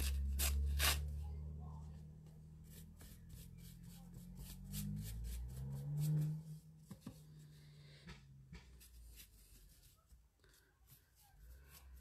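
A low drone from outside, loudest at the start and fading over the first two seconds, swelling and rising again briefly around six seconds. Over it, the soft strokes, rubs and taps of a paintbrush working water into rice paper on a journal page.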